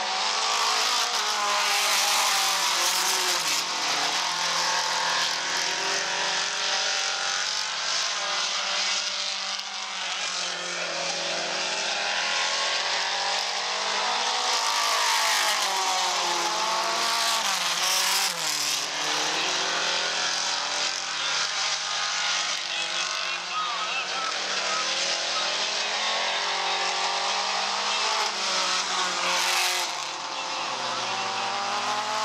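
Several mini stock race cars' four-cylinder engines running hard as they lap a dirt oval. The engine pitch rises and falls repeatedly as the cars come off and into the turns.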